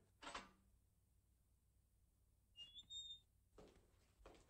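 Near silence, broken by a few faint, brief sounds: a short one just after the start, and two short high thin tones about three seconds in.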